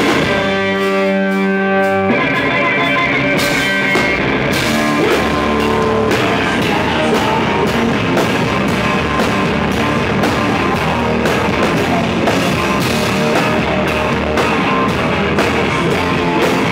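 Live rock band: distorted electric guitar and drum kit playing loudly, with the singer shouting into the microphone. Near the start everything drops away to one held guitar note for about a second and a half before the full band crashes back in.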